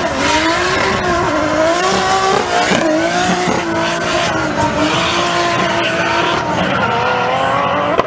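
A drift car's engine revving hard, its pitch rising and falling as the car slides sideways, with the tyres squealing under a cloud of tyre smoke.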